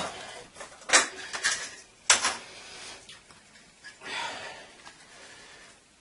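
Handling noise of metal plumbing fittings while PTFE thread tape is put on a fitting: a few sharp clicks and knocks, the loudest about two seconds in, then a softer rustle.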